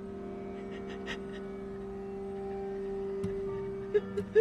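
Held, unchanging notes of a soft background music score, with a few faint breaths or sniffs, the clearest about a second in.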